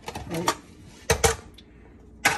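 Plastic salad spinner being opened: the lid is lifted off the bowl, with two sharp plastic clacks about a second in.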